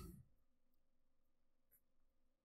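Near silence: a pause in speech with only faint room tone.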